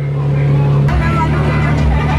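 Steady low drone of a passenger riverboat's engine under way, with a deeper pulsing rumble joining about a second in.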